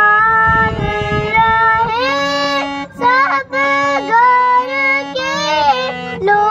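A child singing a Hindustani classical bandish in raag Asavari, her voice gliding between held notes, to her own harmonium accompaniment, whose sustained reed notes step from pitch to pitch beneath her. There is a brief low rumble about a second in.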